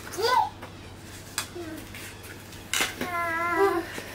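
A toddler's voice babbling: a short high squeal near the start, then a held, wavering sing-song note about three seconds in. Two sharp clicks fall between them.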